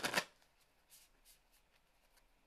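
A deck of oracle cards being shuffled: a quick run of rapid flicking clicks at the start, then a few faint taps as the cards are handled.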